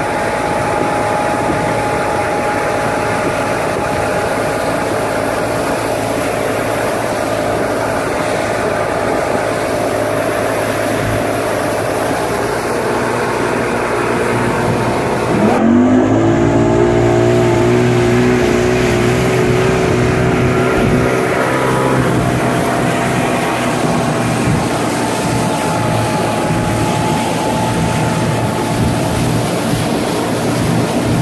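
Mercury 200 hp outboard motor running at planing speed while towing a water-skier, over the rush of water and wind. About halfway through the engine note sweeps sharply up in pitch and runs louder for several seconds, then settles back to its steady cruising sound.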